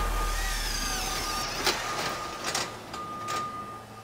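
Electronic sound-design logo sting: a fading noisy whoosh with glitchy digital chirps, three or four sharp clicks and a thin steady high tone, dying away near the end.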